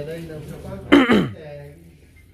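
A short, loud vocal sound about a second in, its pitch falling steeply, over faint background voices.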